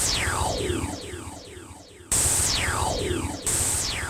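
Synthesized cartoon magic sound effect, played three times as sparkling magic moves the coloured counters: each is a sudden hissing burst with a tone that falls steeply in pitch over about a second.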